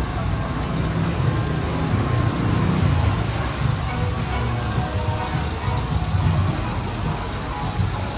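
Busy city street ambience: road traffic and cars running by, with music playing and scattered voices.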